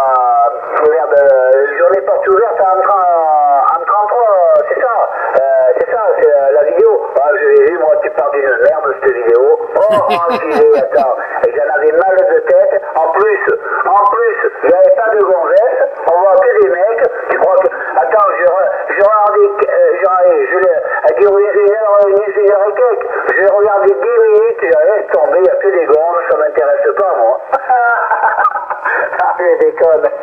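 A distant station's voice received in upper sideband on a Yaesu FT-450 transceiver tuned to CB channel 27, narrow and tinny, talking without a break and hard to make out. There is a brief burst of crackle about ten seconds in.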